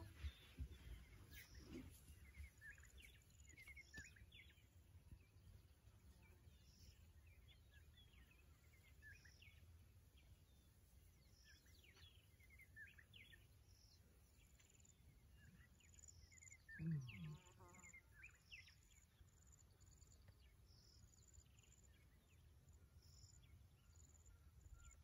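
Near silence of open grassland: faint scattered high chirps come and go throughout, and one short low voice-like sound, the loudest thing here, comes about seventeen seconds in.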